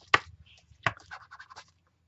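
Craft tools being handled on a tabletop: a sharp click just after the start and another a little under a second in, then a run of lighter scratchy taps.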